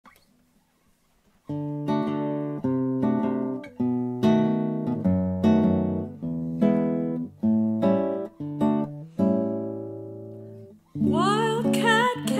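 Nylon-string classical guitar playing an introduction of plucked chords, each ringing and dying away, after a second and a half of silence. A soprano voice comes in about a second before the end.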